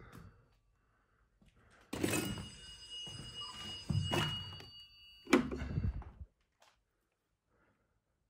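Old rotary telephone's bell ringing with several steady high tones, among heavy knocks and handling thumps. The ringing ends with a sharp clunk about five seconds in as the handset is lifted off the cradle.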